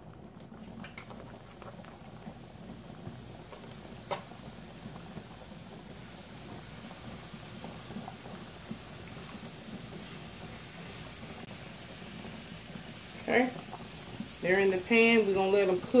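Steady low hiss of pots boiling on an electric stovetop, with a single light click about four seconds in. A woman speaks briefly near the end.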